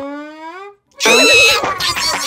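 Cartoon character vocal sound effects: a slowly rising, pitched glide that fades out, then after a brief gap a loud, wavering cry starts about a second in.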